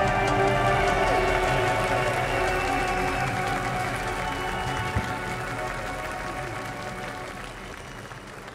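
A live band's final chord, with guitars, held and ringing out, slowly fading away as the song ends. Audience applause rises faintly underneath it.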